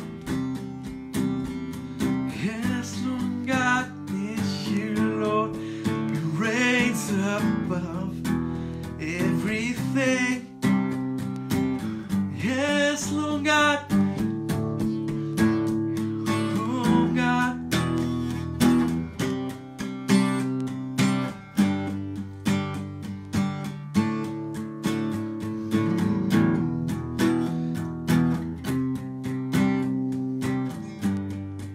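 Acoustic guitar strummed in steady chords at an even rhythm, accompanying a worship song.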